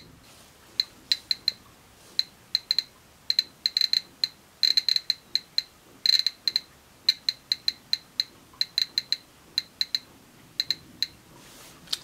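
GMC-300E Plus Geiger counter clicking irregularly over a piece of activated charcoal: short, high-pitched ticks, a few a second on average, sometimes bunched in quick runs. The charcoal has become radioactive from radon decay products given off by the uranium ore stored with it.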